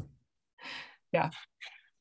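A woman's soft, breathy exhale, like a sigh through a smile, followed about a second in by a short spoken "yeah".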